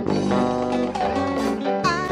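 Live band music led by guitar, with sustained notes throughout.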